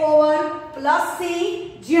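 Only speech: a woman's voice talking, with drawn-out syllables.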